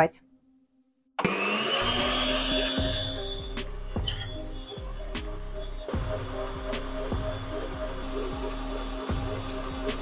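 Stand mixer whisking egg whites and sugar into stiff meringue at high speed: its motor cuts in about a second in with a rising whine, then runs steadily.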